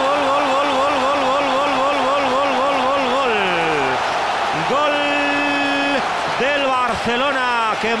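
Spanish football commentator's drawn-out goal shout: a long held, wavering 'goooool' that slides down in pitch and stops about three and a half seconds in, then a second shorter held shout, over steady stadium crowd noise.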